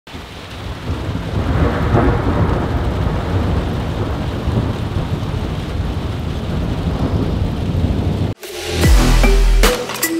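Thunder rumbling over steady rain, the rumble swelling about two seconds in. About eight seconds in it cuts off abruptly and electronic music with a heavy bass beat begins.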